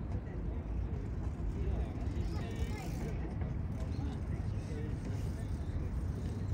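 Outdoor ambience: a steady low rumble with indistinct, faraway voices of passers-by.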